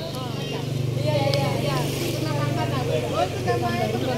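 A motor vehicle's engine running steadily close by, its low hum growing louder about a second in and easing near the end, under the chatter of a group of people.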